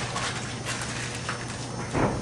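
Chalk writing on a blackboard: a quick run of short taps and scratches as a word is written.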